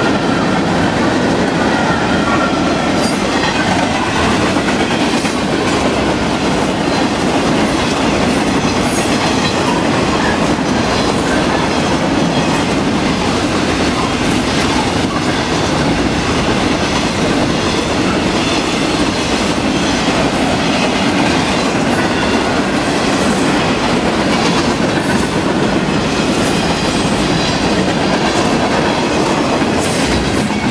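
Freight train cars rolling past close by: a loud, steady noise of steel wheels running on the rails, with frequent clickety-clack of the wheels going over the track.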